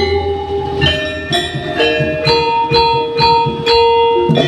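Javanese gamelan playing: bronze metallophones struck in a steady rhythm of about two strokes a second, each note ringing on, with a note held ringing from about halfway through.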